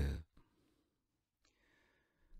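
A man's voice trailing off on a word, then a pause of near silence and a soft intake of breath about a second and a half in.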